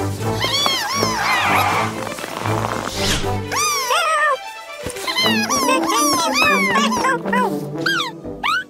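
Cartoon background music with a steady bass line, overlaid by runs of short, high, squeaky creature vocalizations that rise and fall in pitch.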